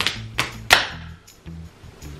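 Three sharp slaps of fists striking open palms, about a third of a second apart, the last the loudest, over background music.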